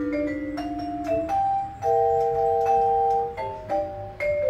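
Vibraphone played with mallets: a low note held with a pulsing waver, then a chord of several notes struck about two seconds in and left ringing, followed by shorter single notes.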